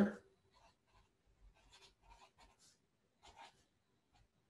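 Marker pen writing on graph paper: a series of short, faint scratchy strokes as letters are drawn.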